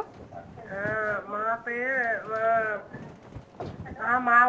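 A caller's voice over a telephone line, quieter than the studio speech, speaking a few short phrases from about a second in, its pitch wavering.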